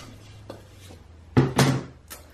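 Tencel twill dress fabric rustling faintly as it is handled and turned inside out, with a small click about half a second in and a brief louder rustle or thump in the second half.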